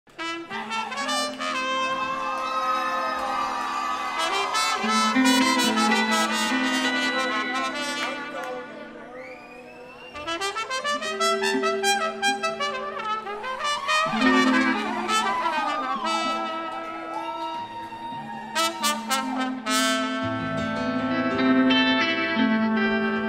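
Live band playing an instrumental intro, with a trumpet carrying the melody over sustained low chords. The music eases off briefly about nine seconds in, then picks up again.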